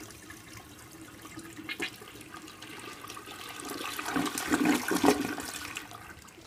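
A 1960s Kohler Wellworth toilet flushing: water swirls through the bowl and builds to its loudest as the bowl drains about four to five seconds in, then falls away near the end.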